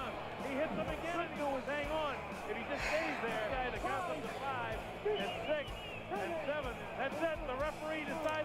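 A television boxing commentator's voice from the fight footage, quieter than the narration around it, over background music.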